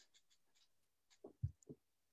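Near silence, broken by three faint, brief sounds a little past the middle as a paper membership card is handled close to a webcam microphone.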